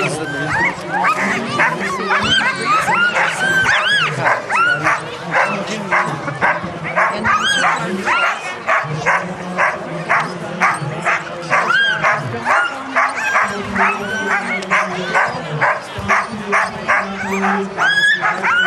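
Harnessed sled dogs yelping and barking nonstop, about two high yelps a second, the excited clamour of a team eager to run at the start line. Voices murmur underneath.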